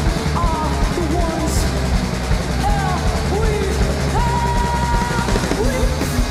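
Punk rock band playing live: drum kit and bass guitar driving underneath, with a line of bending, gliding notes on top and one long held note about four seconds in.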